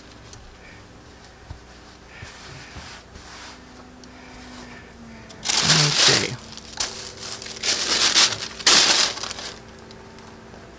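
A large paper pattern sheet crinkling and rustling as it is handled, faint at first, then in loud irregular bursts through the second half.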